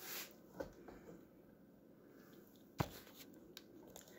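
Quiet handling noise with faint rustling and a few light clicks, and one sharper click about three-quarters of the way through.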